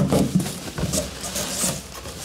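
Rustling and crinkling of quilted puffer pants and cardboard as the pants are pulled out of a box, in a few irregular bursts with small knocks.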